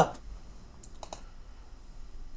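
Three quick clicks at a computer, close together about a second in, over quiet room tone.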